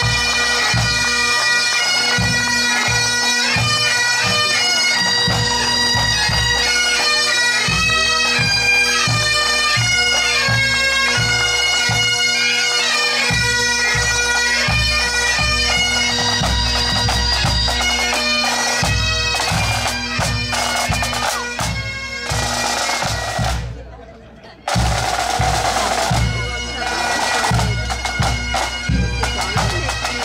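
Pipe band marching: Highland bagpipes playing a tune over their steady drones, with snare, tenor and bass drums beating time. The sound dips sharply about 23 seconds in and comes back a second or so later.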